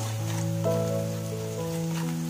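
Onion-tomato masala sizzling in oil in a pan as it is stirred, with a steady hiss, under background music of held, slowly changing chords.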